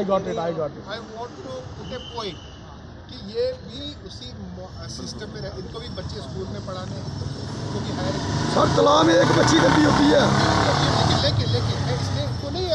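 Many people talking over one another in a crowd, the chatter growing louder about eight seconds in.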